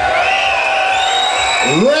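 A man's voice over the PA holding one long, high, steady shout for nearly two seconds: an MC's drawn-out call to the crowd through the sound system.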